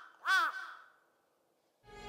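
A crow cawing, likely an added sound effect. One arched caw comes near the start, the last of a series, and trails off with an echo into quiet. Soft music begins right at the end.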